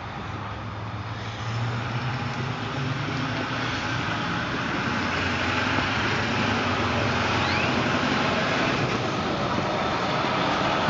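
Steady road-traffic noise, getting louder about a second and a half in and then holding steady.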